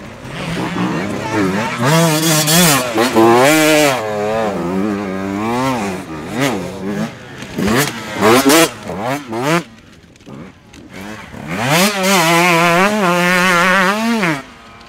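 Dirt bike engines revving in repeated throttle bursts, the pitch rising and falling with each blip. There is a lull about ten seconds in, then a longer, sustained rev near the end.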